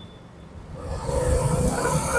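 Background noise on a live outdoor line, swelling over about a second into a steady low rumble with hiss.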